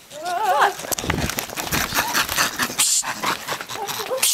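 A monkey's short wavering shriek, followed by loud scuffling and knocking as monkeys attack a group of people.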